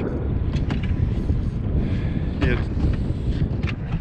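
Wind buffeting the microphone: a steady low rumble, with a brief snatch of voice about two and a half seconds in.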